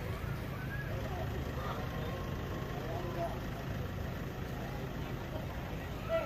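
Steady low rumble of idling vehicle engines, with faint voices of people talking in the background.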